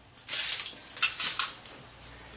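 Aluminium foil crinkling as a foil-wrapped bulb is handled: a short rustling burst, then a few sharp crackles.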